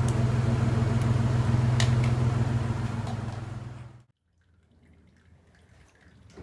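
Steady low hum from the running truck and its circulating water pump, with water running from a hose into a plastic bucket. The sound fades and cuts off about four seconds in, leaving a faint trickle.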